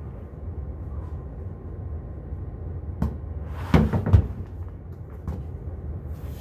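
A steady low hum, with a sharp click about three seconds in and a quick cluster of heavy thuds just before four seconds.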